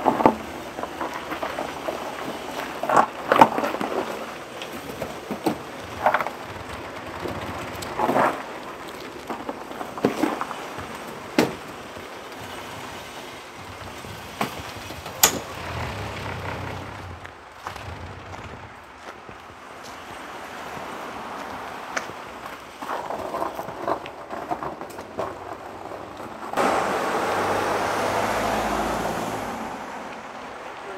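Vehicles moving on a slushy street, with scattered sharp clicks and crunches close by and a louder rushing sound lasting about three seconds near the end.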